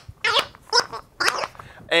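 Wobble Wag Giggle dog ball being tilted by hand, its gravity-operated tube noisemakers letting out short giggling sounds, three of them about half a second apart.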